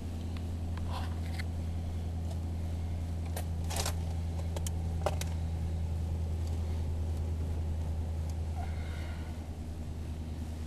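1991 Cadillac Brougham's V8 engine running steadily as a low hum heard from inside the cabin, shortly after a cold start. A few light clicks come through the middle.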